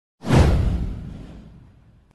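A whoosh sound effect from an animated intro, with a deep boom underneath. It hits suddenly, falls in pitch and fades out over about a second and a half.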